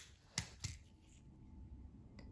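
Three light clicks in the first second, as small tools or parts are handled on a workbench mat, then faint room tone.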